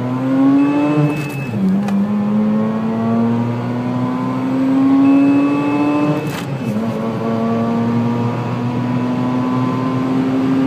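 Mazda RX-8's twin-rotor rotary engine at full throttle, heard from inside the cabin, its pitch climbing steadily through the gears with upshifts about one and a half seconds and six and a half seconds in. A faint high steady tone sounds just before each shift.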